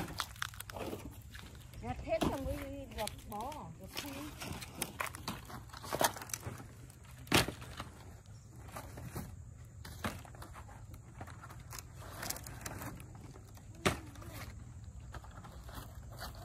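Dry, thin wood veneer sheets being gathered and stacked by hand: scattered sharp clacks as sheets knock together, with rustling in between. A voice is heard briefly about two to four seconds in.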